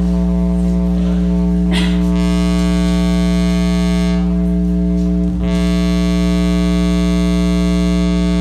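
Software-oscillator theremin played by hand movements over infrared sensors, sounding through a PA speaker: a steady, buzzy electronic drone held at one low pitch with many overtones. The upper overtones drop away briefly around the middle.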